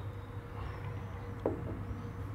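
Stemmed beer glass set down on a wooden table: a short soft knock about one and a half seconds in, with a smaller tap just after, over a steady low hum.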